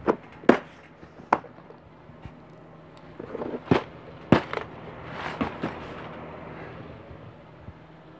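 Small plastic model-kit parts and their box being handled on a workbench: about five sharp clicks and knocks over the first five seconds, with rustling between them, then quieter.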